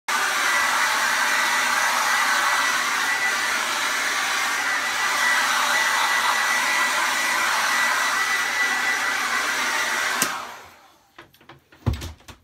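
Handheld hair dryer blowing steadily with a thin, steady whine, switched off with a click about ten seconds in and dying away over the next second. A few soft knocks follow near the end.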